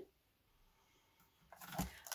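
Near silence: room tone, then a brief faint noise in the last half second.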